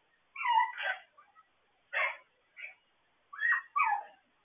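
Puppy whimpering: four short, high cries that bend in pitch, spread across the few seconds with quiet between them.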